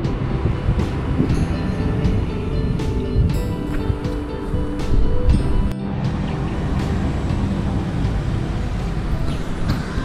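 Background music with held notes over low road and traffic noise, dropping out briefly a little before six seconds in.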